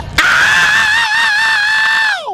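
A high, scream-like wailing note in the animated logo intro, starting suddenly, held with a slight wobble for nearly two seconds, then beginning to slide down in pitch at the very end.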